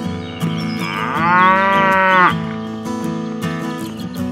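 A cow moo: one long call starting about a second in, rising at first and then holding before it stops, laid over background acoustic guitar music.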